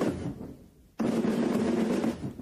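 Military band snare drums playing rolls: one roll fades away just after the start, and a second roll comes in sharply about a second in.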